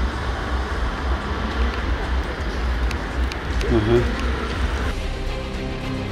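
Steady low rumble of street and traffic noise, with a short voice a little before four seconds in. Background music comes in about five seconds in.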